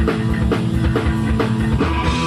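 Punk rock band playing live: electric guitar, bass and drum kit, with a fast, steady drum beat of about four hits a second.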